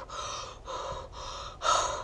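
A woman huffing out four short, breathy open-mouthed exhalations in a row, the last the loudest, blowing out her breath to show it steaming in the freezing cold.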